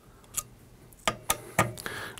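Small hard clicks and ticks of a T-handle Allen wrench and loose screws against the metal retainer plate of a Blitzfire monitor's trip mechanism, about five separate clicks spread over two seconds.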